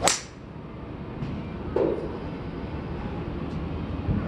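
A golf club striking a ball off a driving-range mat: one sharp crack right at the start. A shorter, duller knock follows about two seconds in.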